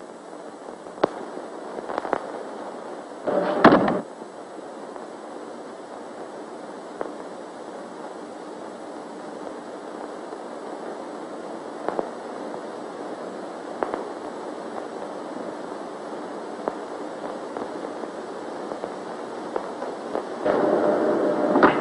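Steady hiss of an early-1930s film soundtrack with scattered clicks and pops. A louder noise lasting just under a second comes a little over three seconds in.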